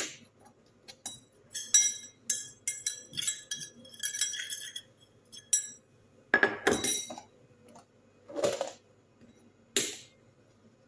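A metal teaspoon clinking against kitchen containers, among them a small stainless steel bowl. It starts with a quick run of ringing clinks, then comes a louder clatter, a knock and a sharp knock near the end.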